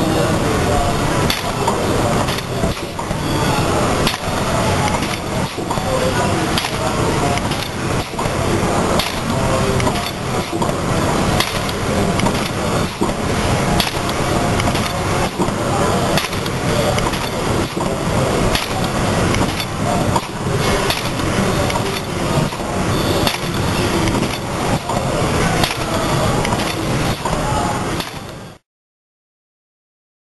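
Food-forming machine running: a continuous mechanical clatter with frequent irregular knocks, with voices in the background.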